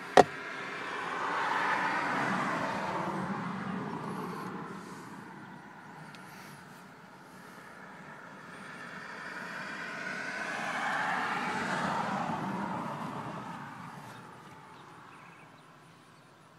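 A sharp click just after the start, then two vehicles passing by in turn, each one's tyre and engine noise swelling and fading over several seconds.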